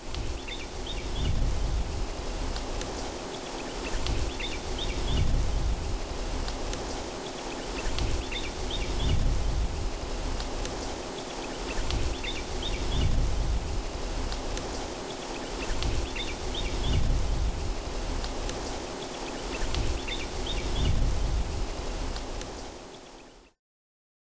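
Rain ambience: a steady hiss with a low swell and a short bird chirp coming back about every four seconds. It stops abruptly shortly before the end.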